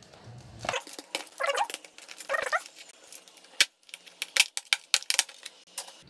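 Sharp plastic and metal clicks and snaps of a laptop's bottom cover being unclipped and lifted off, with two short squeaky sounds early on.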